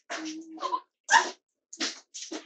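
A small dog vocalizing: a drawn-out whine, then a short, loud yip a little over a second in.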